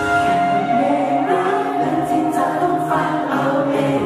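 A man singing a slow song live into a microphone over instrumental accompaniment, heard through a hall's PA system, with long held notes; his voice comes in at the very start.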